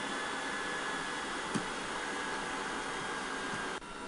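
Steady faint hiss with a light hum and no distinct work sounds, broken by one soft click about a second and a half in. The hiss drops abruptly just before the end.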